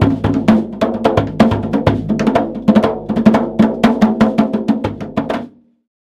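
Djembe played with bare hands in a fast, steady run of sharp strikes, several a second, that stops suddenly near the end.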